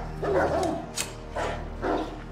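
Dogs barking in short bursts, about four barks roughly half a second apart.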